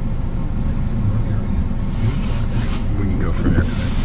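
Steady low rumble of road and engine noise heard inside the cabin of a 2012 Mercedes-Benz C250 as it drives slowly, with faint voices near the end.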